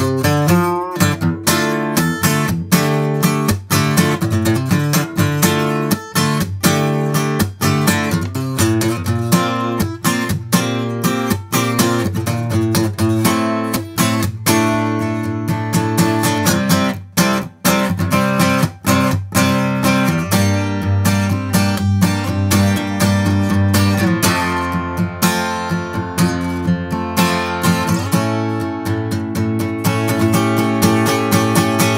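AMI SD-180E solid-wood dreadnought acoustic guitar played with a pick: a steady run of strummed chords and picked notes, with a bright, punchy character. The playing drops off briefly once, about halfway through.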